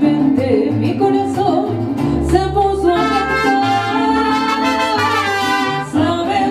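A mariachi band playing and singing live: a sung melody over guitars and a moving bass line, with long held notes in the second half.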